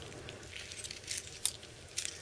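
Faint handling sounds: a few light ticks and a sharper click about one and a half seconds in, as a ruler is lifted away and set down on a wooden bench.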